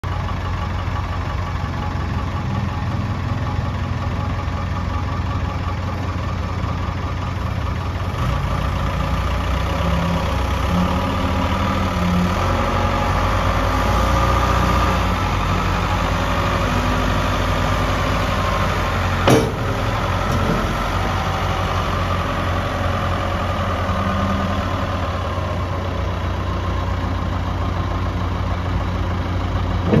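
Case 590 Super L Series II backhoe loader's four-cylinder diesel engine running steadily as the machine is driven and its loader bucket raised. A single sharp clank about two-thirds of the way through.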